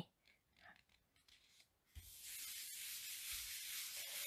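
Near silence, then hands rubbing and smoothing a paper panel flat on card stock: a soft, steady hiss that begins about halfway through.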